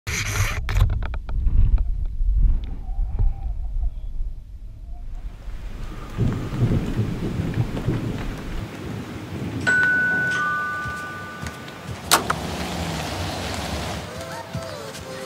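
A deep, thunder-like rumble with crackles at the start, giving way to a steady hiss. Two brief held tones come later, then a sharp hit near the end.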